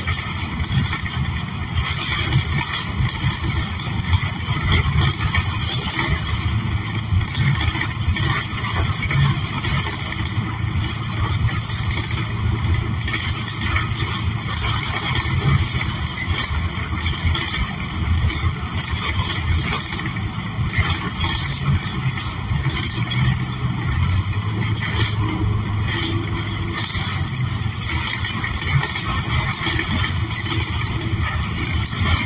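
Interior ride noise of a New Flyer XN40 city bus under way: the Cummins Westport L9N natural-gas engine and Allison automatic transmission run under a steady low rumble mixed with road noise.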